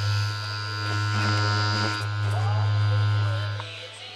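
The vibration motor of a plush vibrating slipper buzzing with a steady low hum, cutting off shortly before the end.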